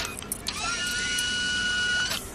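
A few light clicks, then a small electric motor whines steadily at one pitch, like a drill, starting about half a second in and cutting off sharply at the end. The whine comes from the motorised gripper device that holds the glass.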